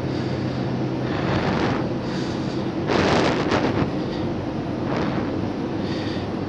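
Steady low droning hum of running plant machinery and live electrical equipment, with louder rushing swells about one and a half seconds in, around three seconds in and again near five seconds.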